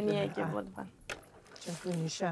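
A woman talking, broken by one short sharp click about halfway through.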